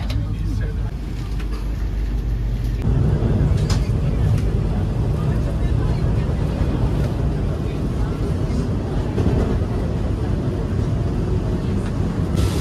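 Steady low rumble of a Vande Bharat Express electric train running, heard from inside the coach; it grows louder about three seconds in.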